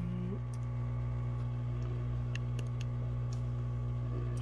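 Hot air rework station running with a steady low hum, with a few light clicks and taps of handling scattered through it.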